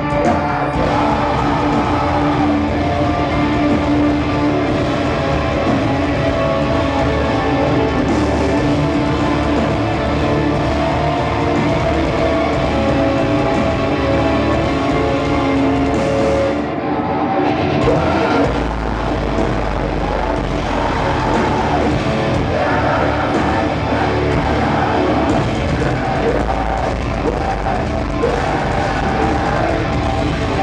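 Live heavy rock band playing loudly through a venue PA, with sustained keyboard-like tones over the full band. A little past halfway the sound briefly thins, then a heavier deep bass comes in.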